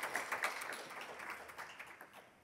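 An audience clapping, thinning and fading away toward the end.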